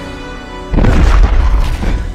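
A deep explosive boom about three-quarters of a second in, the crash of a flaming volcanic rock coming down during an eruption, over orchestral film score.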